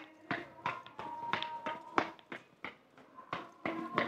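A run of light, irregular taps, about two to three a second, with faint music behind them.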